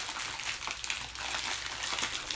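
Rustling and crinkling of plastic packaging handled by hand as a small bagged collectible is opened.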